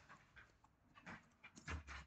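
A pet dog panting faintly in a few short, scattered breaths.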